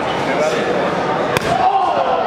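A wrestling strike landing with a single sharp smack about one and a half seconds in, over a hall crowd's shouting and chatter.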